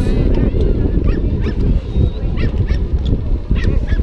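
Loud, uneven low rumble, with short high-pitched calls or shouts breaking through it several times.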